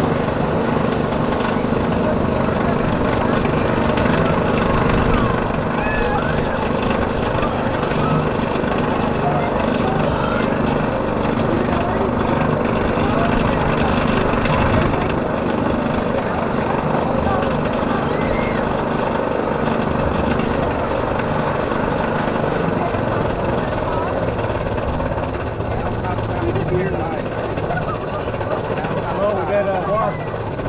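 Morgan hypercoaster train being hauled up the lift hill by its chain lift: a steady mechanical clatter and drone from the lift chain and the train.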